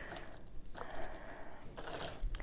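Loose cardboard Springbok jigsaw pieces rustling and clicking faintly as a hand sifts through the box and sets a piece down on the table.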